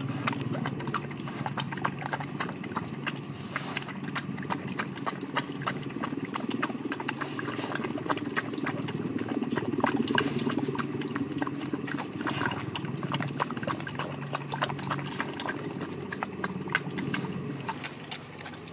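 A large dog eating wet food from a stainless-steel bowl: continuous wet chewing and lapping with many quick clicks of teeth and tongue against the food and the metal bowl, over a low steady hum.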